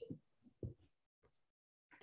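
Near silence on a video-call line, broken by two or three faint, short low thumps in the first second.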